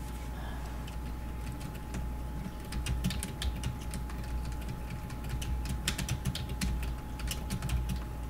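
Typing on a computer keyboard: a quick, irregular run of key clicks that starts about two and a half seconds in, over a faint steady electrical hum.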